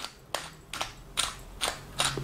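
Pepper mill grinding peppercorns over the dish: a run of about six sharp, cracking clicks, unevenly spaced.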